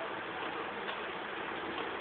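Steady hiss of even noise with a couple of faint ticks.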